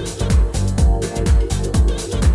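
Deep tech house DJ mix playing: a four-on-the-floor kick drum at about two beats a second, with off-beat hi-hats.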